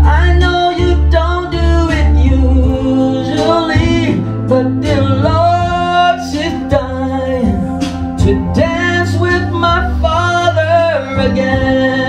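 A man singing a slow song into a handheld microphone through a PA, over a recorded backing track, holding long notes with vibrato.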